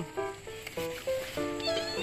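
Soft background music of held notes that step from one pitch to the next, with a short high warbling animal call near the end.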